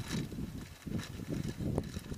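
Plastic zip-top bag handled and opened by hand, an irregular crinkling and rustling with a few faint clicks.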